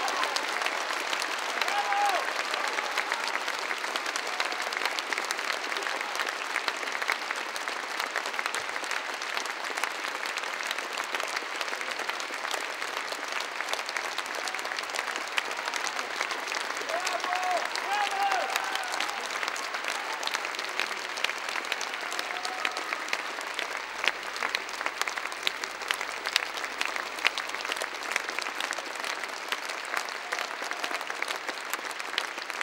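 Theatre audience applauding steadily after a ballet pas de deux, with a few voices calling out over the clapping now and then.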